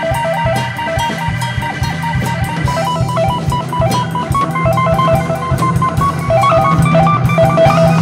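A band playing an instrumental passage: a quick, repeating picked guitar melody over drum kit and bass guitar, the melody moving higher about three seconds in.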